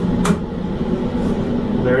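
A button on the GearDryer Freestanding 12 clicks once as its heater is switched on, over the steady whir of the dryer's blower fan pushing air through the boot and glove tubes.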